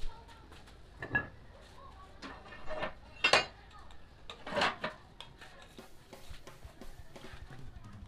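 Iron weight plate and barbell clanking as a plate is loaded onto the free end of a landmine barbell: about four sharp metal clanks in the first five seconds, the loudest ringing briefly.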